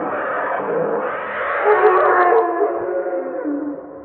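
Macaque's long, wavering cries, falling away just before the end.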